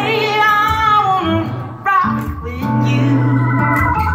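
Live music: a woman singing over electric guitar and keyboard, with a short break in the sound just before halfway.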